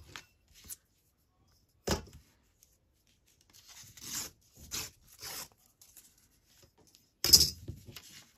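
Old book paper being torn along a metal ruler in a few short rips, with paper rustling. There is a sharp knock about two seconds in and a louder short burst of paper noise near the end.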